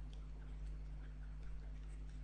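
Faint scattered ticks and light taps of a stylus on a writing tablet as a word is handwritten, over a steady electrical hum.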